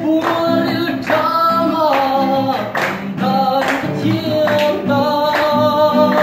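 A young man singing a slow song in long held notes, accompanied by a strummed acoustic guitar.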